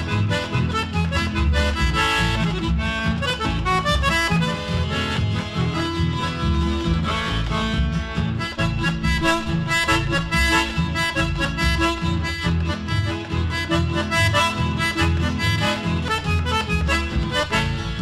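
Instrumental chamamé passage: an accordion plays the melody over guitar accompaniment and a steady rhythmic bass.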